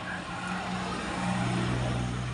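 A motor vehicle passing close by: a steady engine hum with road noise that grows louder toward the second half.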